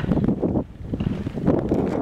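Wind buffeting the camera's microphone in uneven gusts, with a brief lull about half a second in.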